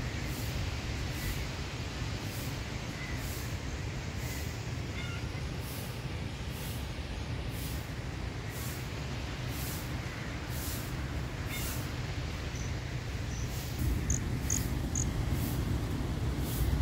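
Wind rumbling on a phone microphone, with scattered short bird chirps and a few brighter, high chirps near the end.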